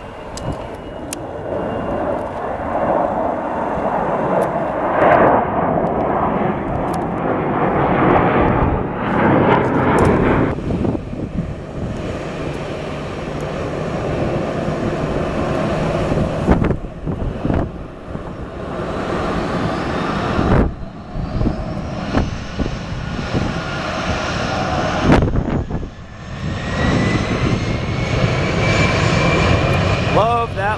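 Jet airliner engines: the loud roar of a rear-engined MD-80-series jet climbing out after takeoff, broken off by several abrupt cuts. It is followed by an Airbus A319 close by on the ground, whose engine whine rises steadily over the last few seconds.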